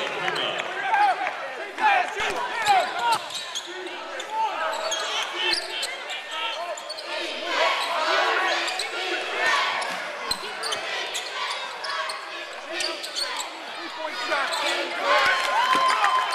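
Basketball shoes squeaking on a hardwood court and a basketball bouncing during live play in a large, echoing gym, with players' shouts. Near the end there is one held squeal lasting about a second.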